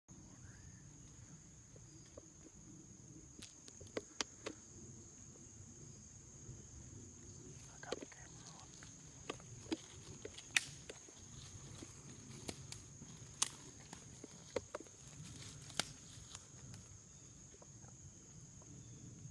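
Faint, slow footsteps through dry leaf litter in woodland, with a dozen or so scattered sharp snaps and clicks of twigs and leaves, over a steady high-pitched whine.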